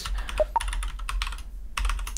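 Computer keyboard typing: a quick run of keystrokes, with a brief pause near the end.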